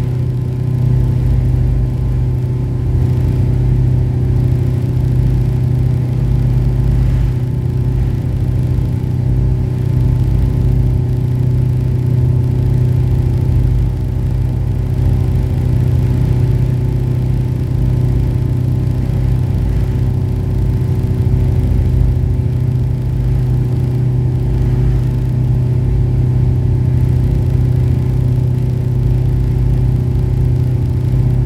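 Passenger ferry's engines running at steady cruising power, heard inside the cabin as a loud, even low hum with a stack of steady tones above it.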